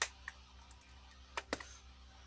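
Silicone bowl mould being flexed and peeled off a still-soft epoxy resin casting: a few light clicks, one at the start and two close together about one and a half seconds in, over a faint steady low hum.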